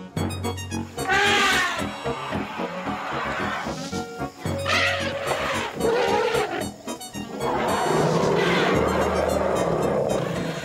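African elephants trumpeting, three loud calls, the last one the longest, over background music.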